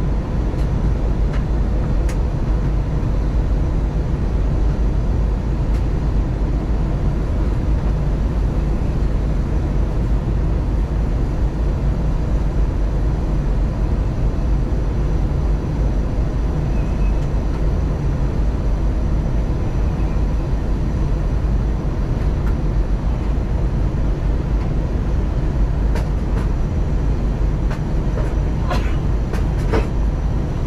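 Steady cabin noise of an Airbus A321 airliner in flight on its descent to land: a low engine hum and airflow rush heard inside the cabin, with a faint steady whine. A few faint clicks near the end.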